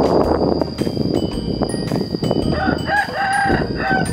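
A rooster crowing once, a short broken start and then a longer held note, beginning about two and a half seconds in.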